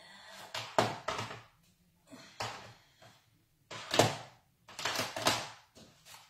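Stamping supplies being picked up and handled: a run of short knocks, clacks and rustles, the loudest about four seconds in.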